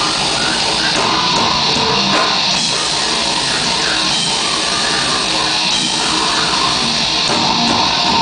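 Heavy metal band playing live, with electric guitar prominent, loud and continuous without a break.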